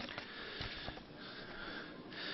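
Faint hiss and breath-like noise from an open conference microphone in a pause between speech, with a few soft clicks.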